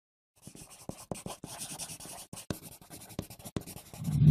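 Pencil sketching on paper: quick scratchy strokes, starting about half a second in and stopping just before the end.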